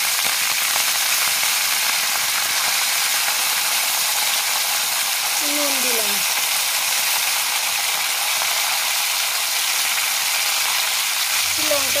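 Cauliflower florets sizzling steadily in hot oil in a metal pan. A short falling call is heard about six seconds in.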